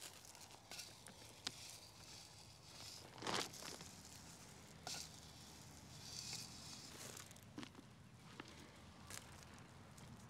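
Faint handling sounds: granular fertilizer poured from a hand scoop into potting soil, with the plastic fertilizer bag crinkling and scattered small rustles and clicks, the loudest rustle about three seconds in.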